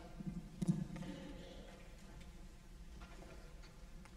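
A few soft knocks and thumps in the first second, like footsteps and someone settling onto a bench, then a quiet hall with a faint low steady hum.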